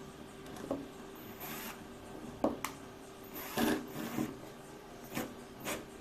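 Scattered light clicks, knocks and rubbing from handling a cordless drill as its chuck is fitted onto a small motor's shaft, with two brief scraping rubs near the middle.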